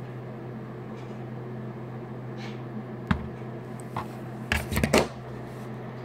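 A steady low hum with a few scattered clicks and, after about four and a half seconds, a short cluster of louder knocks, like things being handled.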